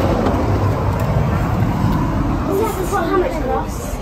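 Steady rumble of street traffic with indistinct voices in the second half.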